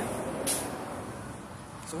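City bus and street traffic passing, the noise slowly fading, with a short high hiss about half a second in.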